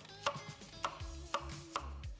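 Chef's knife slicing an onion on a wooden chopping board: four sharp knocks of the blade on the board, about half a second apart.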